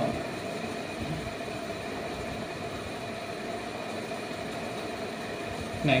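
A steady mechanical hum of room machinery, with a few faint steady tones over an even noise.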